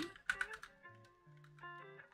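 Computer keyboard keys clicking in a short burst of typing for about the first half-second, then quiet background music with held notes.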